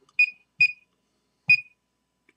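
PROVA 123 thermocouple calibrator's keypad beeping three times as keys are pressed to enter a 300-degree setpoint. Each beep is short and high-pitched, and the last two carry a soft thump of the key press.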